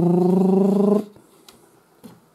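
A man's drawn-out groan of frustration at a losing scratch card, about a second long on one steady, slightly rising pitch, stopping abruptly.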